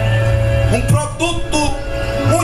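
Live church band playing soft background music: a sustained chord held over a low bass note, with a man's voice briefly over it in the middle.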